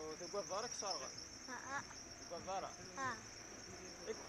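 A boy laughing in short repeated bursts that rise in pitch, over a steady high-pitched hiss.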